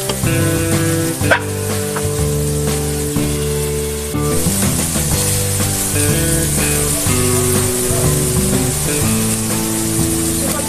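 Background music with held notes plays over the sizzle of bitter gourd slices and rohu fish roe frying in a nonstick wok. A wooden spatula stirs them, with one sharp knock on the pan a little over a second in.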